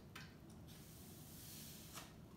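Near silence: room tone, with one faint click just after the start.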